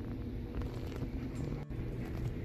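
Soft background music with a steady low hum underneath, level and unchanging throughout.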